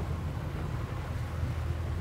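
A boat's engine running steadily at low speed during a slow turn, heard as a low even hum under a faint hiss.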